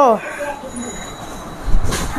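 Handling noise from a phone being swung around in the hand: a low rustle, then a dull bump on the microphone near the end. A voice is heard briefly at the very start.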